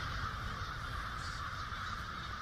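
A steady, unbroken noise with a low rumble underneath, holding the same level throughout.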